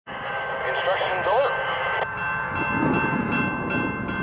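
Railway grade crossing warning bell ringing, struck over and over about twice a second, signalling an approaching train.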